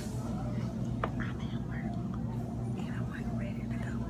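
Soft, indistinct speech over a steady low hum, with a single click about a second in.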